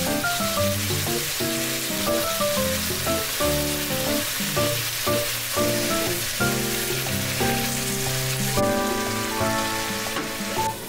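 Marinated beef rib meat sizzling in a stainless steel frying pan: a steady frying hiss under a background music track of short melodic notes.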